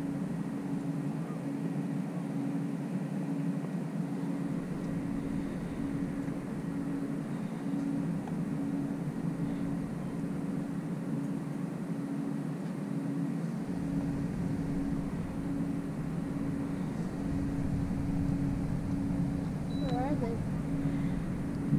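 A boat motor running steadily: a constant hum with a pulsing tone over it, and a low rumble that grows stronger about two-thirds of the way through.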